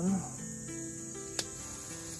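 Steady high chorus of crickets over soft background music with held notes; a single sharp click about one and a half seconds in.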